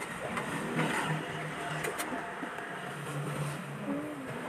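Steady background noise of an eatery with faint distant murmur and a couple of light clicks about two seconds in.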